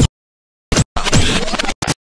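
Choppy scratching sound effect in short, loud bursts that cut off sharply into dead silence between them: a quick blip, another under a second in, a longer scratch lasting most of a second, then a last quick blip near the end.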